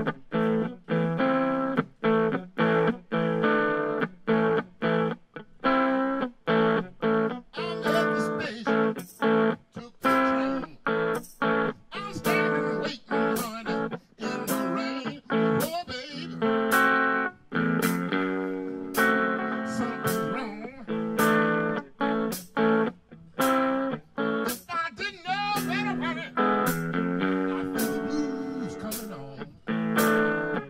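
Electric blues guitar playing the opening of a song in short, chopped chords with brief gaps between them, about two a second. Bent, wavering notes come in about three-quarters of the way through.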